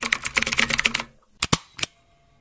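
Typing sound effect: a quick run of key clicks for about a second, then a pause and a few more single clicks, as text appears on screen letter by letter.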